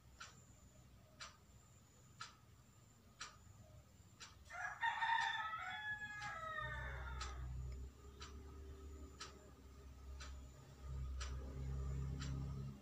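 A rooster crows once, a call of about two seconds near the middle that falls in pitch at the end, over a clock ticking about once a second. A low rumble comes in just after the crow and runs on.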